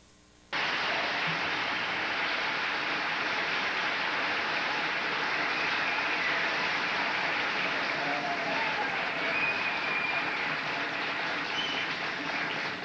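A large audience applauding steadily, with a few faint whistles in the second half. It starts after a half-second dropout.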